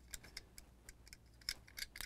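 Faint, irregular light clicks of fingers working the rear hatch and tiny motorcycle of a Hot Wheels '55 Chevy panel die-cast toy, small plastic and metal parts tapping and snapping into place.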